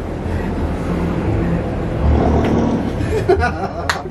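Muffled voices and soft chuckling from a small group over a steady low rumble, with a single sharp knock just before the end.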